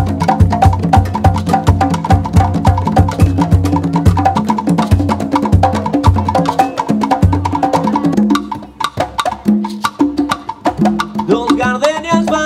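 Conga drums played by hand in a fast, dense Afro-Cuban rhythm of open tones and slaps, with several drums sounding together. About eight seconds in, the drumming thins to sparser strokes.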